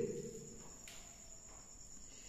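A faint, steady, high-pitched background drone in a pause between speech, with the tail of the last spoken word fading out at the start.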